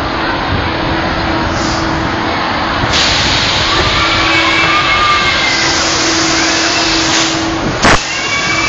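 Rushing wind and motion noise on a phone microphone riding a spinning amusement ride, over a steady low hum. The rush gets louder about three seconds in, and a brief loud knock comes right at the end.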